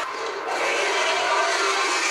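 Steady, dense noise of a large army massing and advancing, heard from a TV battle scene's soundtrack: many voices and riders blending into one continuous roar.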